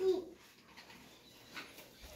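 A voice ends a word at the start, then a quiet room with one faint, brief rustle or knock about one and a half seconds in.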